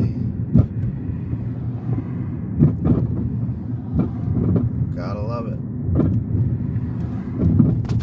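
Steady low rumble of a car's engine and tyres heard from inside the cabin while driving slowly, with a few short knocks and a brief snatch of faint voice about five seconds in.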